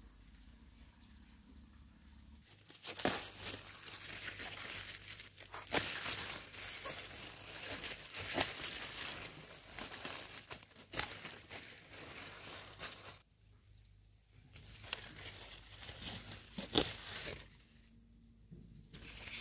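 Close-up rustling and crunching of leafy mustard greens being picked by hand, with sharp snaps as stalks and leaves break off. It starts about three seconds in, pauses briefly past the middle, and stops just before the end.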